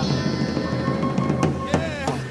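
Live zydeco band holding a sustained chord, with a few sharp drum hits in the second half.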